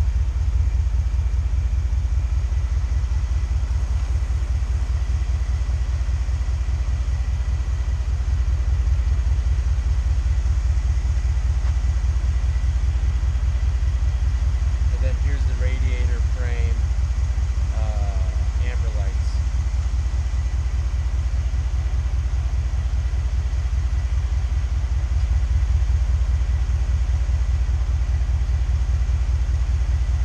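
A 2014 Ford SVT Raptor's 6.2-litre V8 idling with a steady low rumble.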